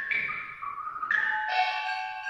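Tuned metal percussion struck in a quick run of notes, about five strokes in two seconds, each note ringing on with a bright bell-like sustain that overlaps the next.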